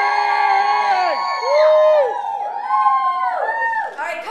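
A group of young children cheering and yelling together, several long held shouts in a row, each falling away in pitch at the end.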